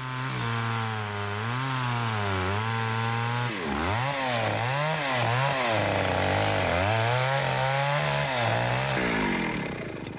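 Chainsaw running, its engine pitch rising and falling as it is revved, with several quick dips in the middle, then falling off and stopping near the end.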